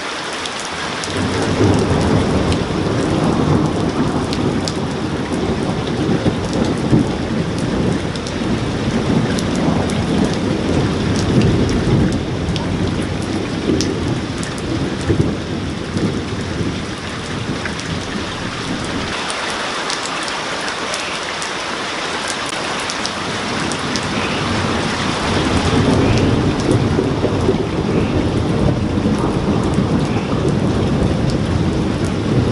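Thunderstorm: steady rain with long rolling thunder rumbling through most of it. The thunder dies down for a few seconds about two-thirds through and builds again near the end, while single drops tick close by.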